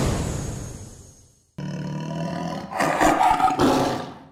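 Tiger-roar sound effect. It opens with a noisy swell that fades out over the first second and a half, then a rough, rumbling roar starts suddenly, grows louder near the end and dies away.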